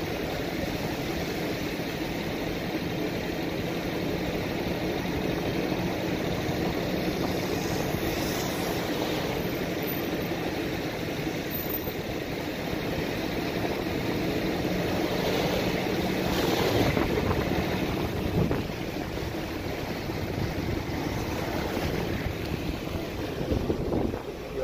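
Car driving on a wet, slushy road, heard from inside the cabin: a steady mix of engine and tyre noise, briefly louder about two-thirds of the way through.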